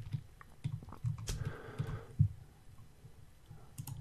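A few faint, scattered clicks and taps from a computer mouse and keyboard, the sharpest about two seconds in.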